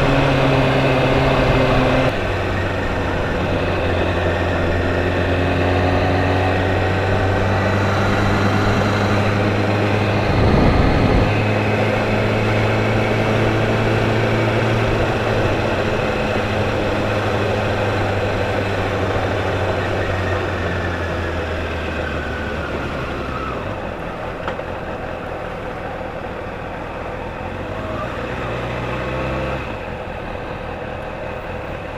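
Kawasaki Ninja ZX-6R 636 inline-four engine running at low speed, its note stepping down about two seconds in and then easing off toward a quieter, lower run as the bike slows, with a small rise near the end. A brief low rush of wind on the microphone about ten seconds in.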